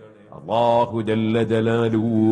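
A man's voice chanting in Arabic, in the drawn-out, melodic style of Quran recitation. It begins about half a second in, after a brief pause, and holds long, steady notes.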